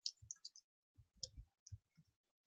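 Faint, scattered keystrokes on a computer keyboard, about half a dozen separate clicks.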